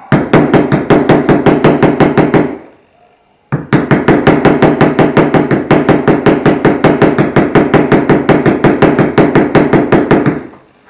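A mallet striking a metal leather-stamping tool over and over, about six blows a second, driving a pattern into the leather. One run of blows lasts about two and a half seconds, there is a short pause, and a longer run follows.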